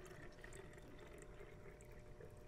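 Faint trickle of water being poured from pitchers into plastic bottles, over low steady room hum.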